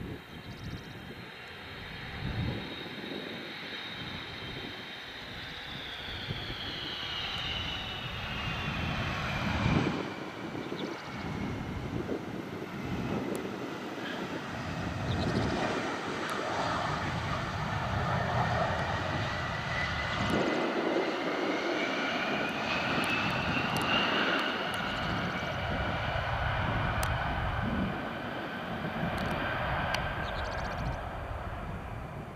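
Boeing KC-135R Stratotanker's four turbofan jet engines during a touch-and-go. A high whine falls in pitch as the jet comes in to land. Later it rises again and the sound grows louder as power comes up for the takeoff roll, all over a low jet rumble.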